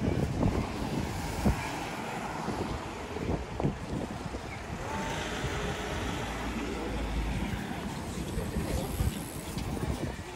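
Busy city street noise heard while walking beside the road, with a light van driving past about halfway through and wind buffeting the microphone. A few short knocks sound in the first four seconds.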